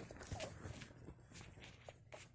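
Faint rustling of bedding with soft, irregular knocks as the phone is handled close against the blankets.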